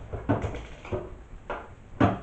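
Plastic knocks and clatters from a flat-panel monitor's case being handled and set down on a table while it is being pried apart: several sharp knocks about half a second apart, the loudest at the end.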